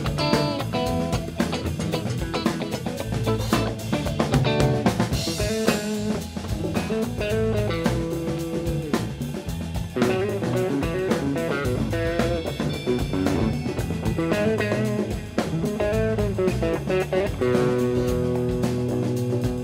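A live rock band playing: electric guitar, bass and drum kit, with keyboards, in a full, steady jam.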